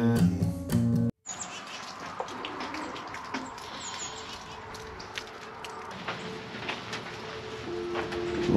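The last second of a country song with acoustic guitar and singing, cut off abruptly, then quiet outdoor ambience: a steady hiss of light rain with scattered drips and a few faint bird chirps.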